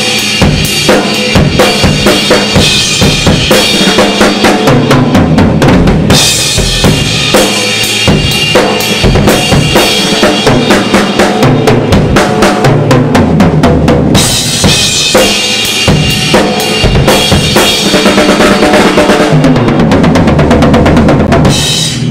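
A ddrum drum kit played hard with the butt ends of the sticks, so more wood strikes the drums: a dense rock groove and fills on snare, toms and bass drum, giving a big heavy sound. Cymbals crash through the first several seconds, drop back for a stretch in the middle, and return for the last third.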